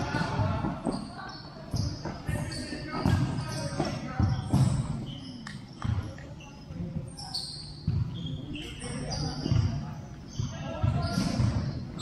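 Futsal ball being kicked and bouncing on a hard indoor court, a string of short thuds at irregular intervals echoing in a large hall, mixed with players' shouts.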